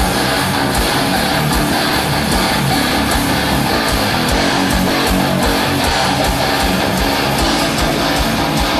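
Live rock band playing an instrumental passage without vocals: electric guitar over bass guitar and drums, with a steady, driving kick-drum pulse.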